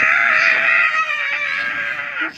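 A child's long, held, scream-like roar at one steady pitch, lasting about two seconds: a pretend dinosaur roar.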